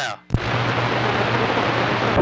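CB radio switching from transmit to receive: a click about a third of a second in, then steady loud static hiss from the speaker with a low hum beneath it. This is the open receiver carrying band noise between stations.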